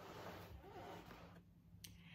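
Faint rustle of a board book being opened and handled, with a small click near the end.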